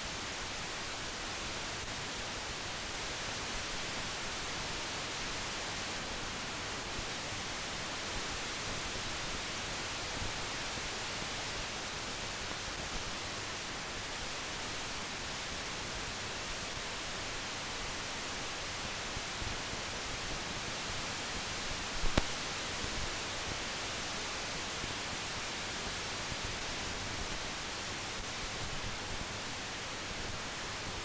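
Steady, even hiss from the empty soundtrack of a mute film transfer, with one brief click partway through.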